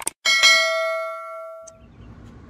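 Subscribe-button sound effect: a quick double mouse click, then a bright notification bell ding that rings out and fades over about a second and a half.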